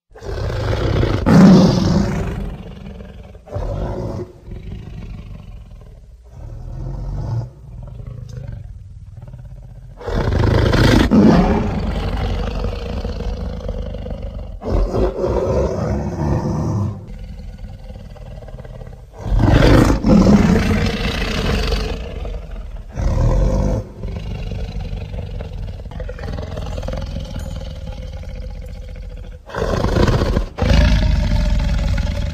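Dinosaur roar sound effects. Loud roars come about a second in, at about ten seconds and at about twenty seconds, with quieter roars and rumbles between.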